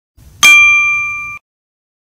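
A single bright, bell-like ding, a chime sound effect, struck about half a second in. It rings with a few clear tones, fades for about a second, then cuts off suddenly.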